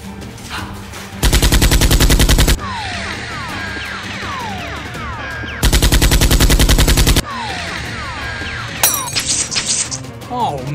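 Automatic gunfire sound effect: two long bursts of rapid fire at about ten shots a second, each followed by short falling ringing tones. A sharp hit comes near the end. Background music plays underneath.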